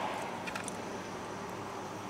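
A steady low hum inside a car's cabin, with a few faint clicks of plastic forks against takeout trays about half a second in.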